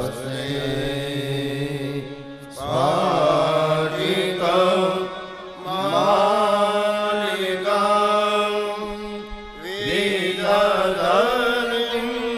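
A man chanting devotional verses in a melodic, ornamented voice over a steady held drone, in four long phrases with short breaks between them.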